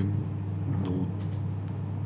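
Steady low hum, with a brief faint voice sound about a second in.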